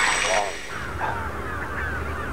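Shrill falling screeches of the dinosaur scene's sound effects trail off in the first half second. Then a steady low outdoor wind rumble sets in, with faint bird calls over it.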